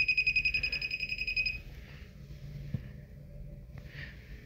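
Hand-held Tramex moisture meter beeping rapidly while pressed to the drywall, its alarm signalling elevated moisture from the condensate leak; the beeping stops about a second and a half in when the meter is lifted, followed by a couple of faint taps.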